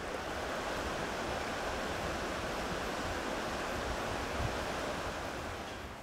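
A steady, even rushing noise like surf, with no tune or voice in it, easing off slightly near the end.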